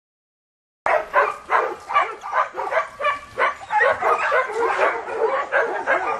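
Several kennelled pointer dogs barking at once in a rapid, overlapping chorus, starting suddenly about a second in.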